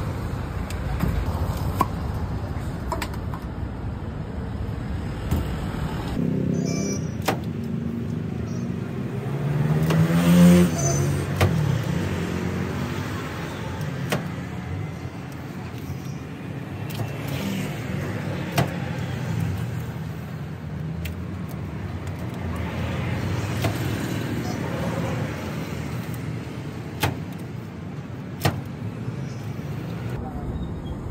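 Steady roadside traffic noise, with a vehicle passing loudest about ten seconds in. Scattered sharp taps sound over it.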